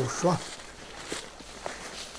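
Footsteps through leaf litter and brush on the forest floor, a few scattered steps after a voice trails off in the first half second.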